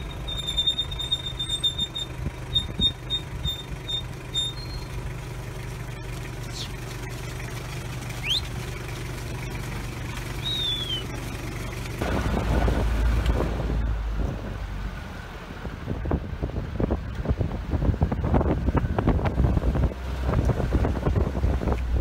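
Jeep engine running steadily at low speed, with a few high, short whistles in the first half. About halfway through the sound grows louder and rougher, with rapid clattering, as the vehicle is surrounded by a herd of sheep and goats.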